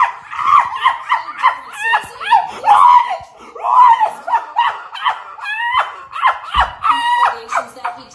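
A high-pitched voice in quick, choppy bursts, speech-like and laughing, with no clear words. A brief held note comes near the end.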